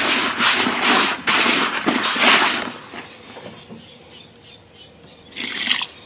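Dry, crumbly fishing groundbait being worked by hand in a bucket: a run of rasping rubs, about three a second, for the first couple of seconds, then quieter. A short rustle near the end.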